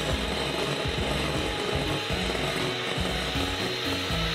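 Electric hand mixer running, its twin beaters whisking a liquid mixture in a glass bowl until it foams: a steady whirring noise. Background music plays faintly underneath.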